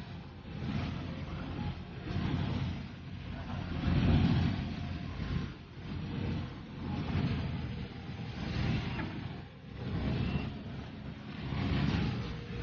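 Low rumbling noise that swells and fades every second or two, with no distinct knocks or tones.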